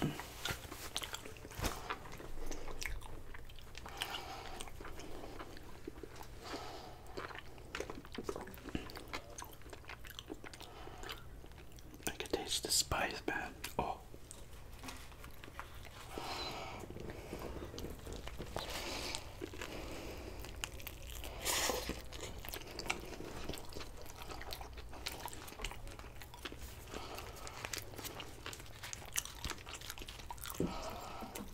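Close-miked biting and chewing of a sushi burrito, with irregular wet mouth clicks and smacks and occasional crunches as the nori-wrapped rice and fillings are eaten.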